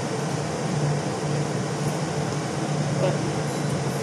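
A steady machine hum with an even hiss, unchanging throughout.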